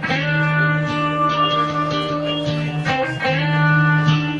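Guitar instrumental: plucked melody notes ringing over a steady held low note.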